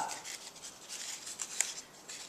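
Card-stock paper loops rustling and rubbing as they are handled and overlapped, with a single sharper click about one and a half seconds in.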